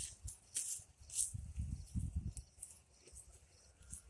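Faint rustling noises with a low, uneven wind rumble on the microphone, loudest just before the middle.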